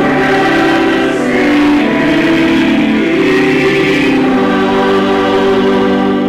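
Church choir singing a hymn verse in full chords, ending on a long held chord from about two-thirds of the way in.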